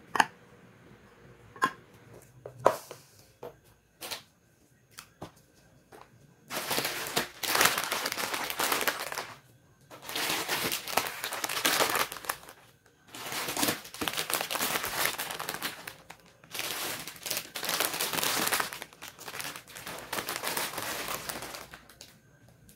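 A few sharp knocks as metal cans are set down on a stone countertop. Then long spells of crinkling as plastic instant-noodle packets are handled and arranged, in four stretches of a few seconds each with short pauses between.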